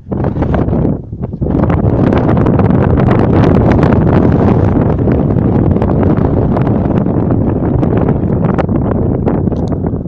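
Strong wind buffeting the phone's microphone, a loud, steady low rumble that settles in about a second and a half in after a brief lull.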